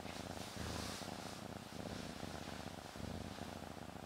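Domestic cat purring, a soft, low rumble that rises and falls in waves.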